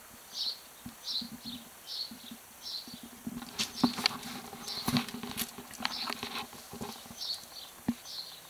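Footsteps walking through grass and over stone slabs, a step about every two-thirds of a second, followed by denser rustling and clicks from about halfway through.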